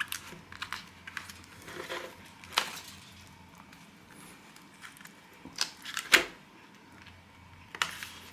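Crimped rim of an aluminium foil takeaway tray being bent open by hand to free its paperboard lid: a scatter of short, sharp foil crinkles and clicks, with the loudest about two and a half seconds in and again around six seconds in.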